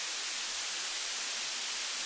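A steady, even hiss with no other sound standing out.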